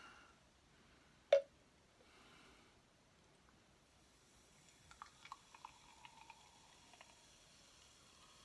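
Carbonated cola being poured from a plastic bottle into a glass mug, with faint fizzing and small pops in the second half as it fills. A single sharp click comes just over a second in.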